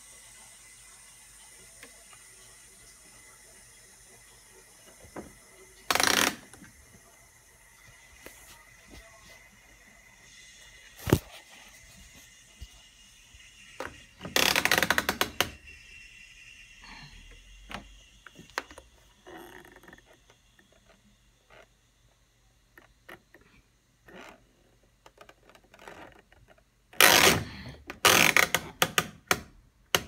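Mechanical timer dial of a Bosch Classixx WTL6003GB tumble dryer being turned by hand, ratcheting and clicking as it passes the drying-time settings. The clicking comes in loud bursts about 6 s in, around 15 s and near the end.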